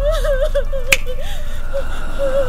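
A single sharp finger snap about a second in, over a wavering, warbling tone.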